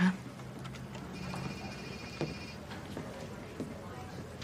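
Quiet room tone with a steady, high-pitched buzzing tone lasting about a second and a half, starting about a second in, and a light knock near its end.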